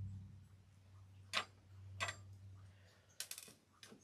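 Faint, sparse metal clicks of needle-nose pliers working a small metal ring open and closed: single clicks about one and a half and two seconds in, then a quick run of clicks a little after three seconds, over a low steady hum.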